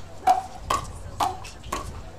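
Pickleball paddles striking a hard plastic ball in a quick exchange at the net: four sharp pops about half a second apart, each with a short hollow ring.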